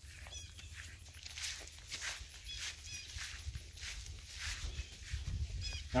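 Footsteps through grass, a soft step about every half second, over a low rumble of wind or handling on the microphone, with a few faint high chirps.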